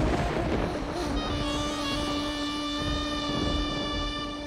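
Dramatic background score: a low rumbling swell, then from about a second in a held chord of steady tones that fades slightly toward the end.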